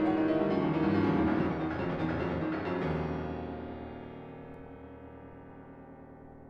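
Solo piano playing a passage of full chords, then a last low chord struck about three seconds in and left to ring, fading away slowly as a piece comes to its end.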